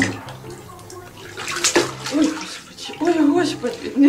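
Water splashing in a bathtub as a cat moves through it, with a sharper splash about one and a half seconds in. A voice-like pitched sound joins in over the second half.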